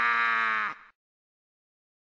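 A man's voice holding one long, steady vowel, the drawn-out end of a "wow". It cuts off abruptly just under a second in, and dead silence follows.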